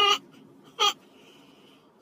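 Two short, high-pitched vocal cries, about a second apart, over quiet room noise.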